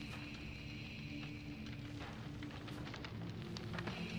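Quiet film soundtrack: a low, steady score drone of a few held tones over a faint crackling hiss, with a few light ticks.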